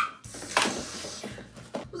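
Rustling of a gift box and the plastic-wrapped toy ball inside it as it is lifted out, with a light knock about half a second in.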